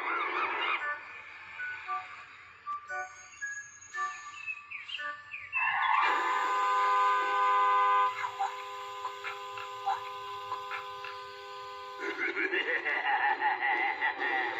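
Cartoon soundtrack of music and sound effects: short scattered pitched notes, then a long held chord of several steady tones in the middle with a few clicks over it, and a character laughing near the end.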